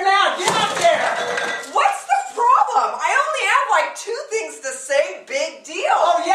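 A man and a woman laughing, with a noisy clatter starting about half a second in and lasting about a second.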